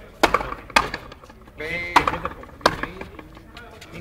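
Frontenis rally: a hard rubber ball cracking off strung rackets and the fronton wall, four sharp hits, the first pair about half a second apart and the second pair just over a second later.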